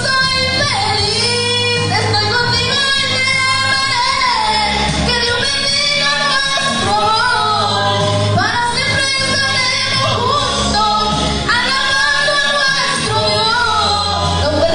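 A woman sings a church praise song through the PA in a large hall, over amplified accompaniment with a steady bass line.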